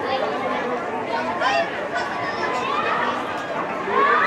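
Spectators at a swimming meet chattering, many overlapping voices in a steady crowd murmur.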